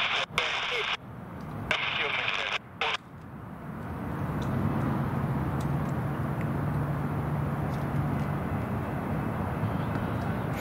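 Low, steady rumble of an approaching train's diesel locomotive, building up a few seconds in and settling into a steady engine hum. In the first few seconds it is mixed with short bursts of voice that cut in and out abruptly.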